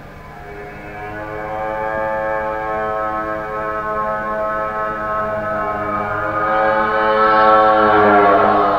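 Live rock music: one long, sustained electric guitar note with many overtones, swelling louder over several seconds and sagging slightly in pitch near the end.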